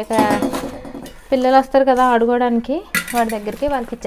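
A woman's voice talking, with a sharp clink of steel kitchenware just before three seconds in.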